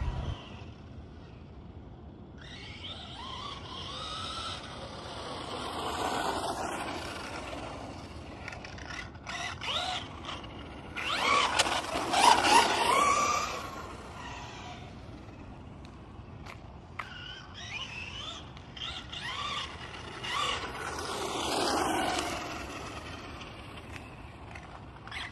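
Helion Invictus 4x4 electric RC car making three high-speed passes, its motor whine and tyre noise swelling and fading each time. The loudest pass comes about halfway through.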